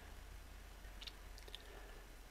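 Near silence: a faint low hum, with a few faint, short high-pitched clicks a little after a second in.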